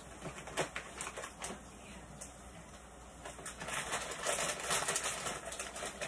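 Scattered light clicks and taps of cooking, with a soft rustle that grows in the second half: a wooden spatula stirring onions in a non-stick frying pan and a plastic bag of penne being handled.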